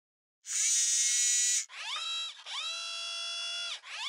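Synthetic logo sound effect made of machine-like electronic whirs: a bright, high-pitched one starting about half a second in and lasting about a second, then a short whir and a longer one, each sliding up in pitch and then holding steady, with a third starting near the end.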